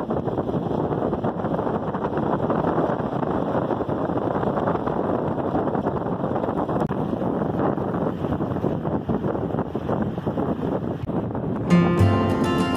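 Wind buffeting the microphone, mixed with engine and tyre noise from a vehicle driving along a sandy dirt track, heard as a steady, loud rushing noise. Acoustic guitar music comes in right at the end.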